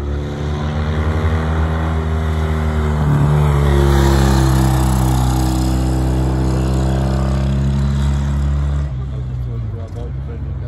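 A racing vehicle's engine running hard as it climbs the hill, held at high revs. Its pitch bends up and then falls away through the middle, and the sound drops suddenly about a second before the end.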